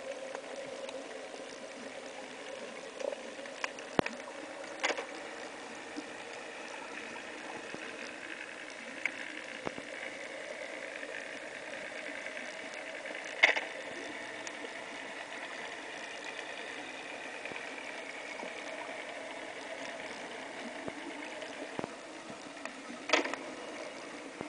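Underwater ambience picked up by a camera while diving over a reef seabed: a steady hiss with a faint, drifting hum, broken by scattered sharp clicks and a few louder knocks.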